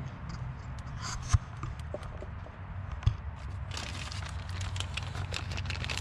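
A single sharp knock about a second in, then, from a little past halfway, a plastic parts bag crinkling as it is handled, over a steady low hum.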